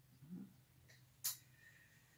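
Near silence over a faint steady low hum, broken by a brief soft hum of a voice near the start and one short sharp click a little past the middle.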